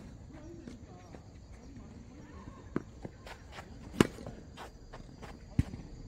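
Tennis rally: a string of sharp knocks from the ball being struck by rackets and bouncing on the hard court, starting a little under three seconds in, the loudest about four seconds in.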